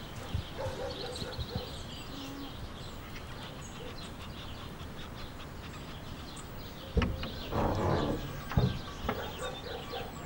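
Faint outdoor background with small birds chirping. About seven seconds in, louder knocks and clatter set in.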